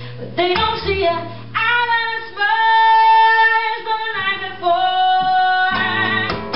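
A woman singing live with guitar accompaniment, drawing out two long held notes in the second half.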